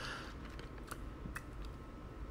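A short pause in speech: faint hiss with two soft clicks about a second in, roughly half a second apart.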